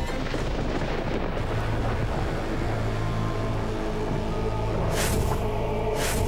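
Dramatic background score over a deep, rumbling low drone, with a short whoosh-like swell about five seconds in.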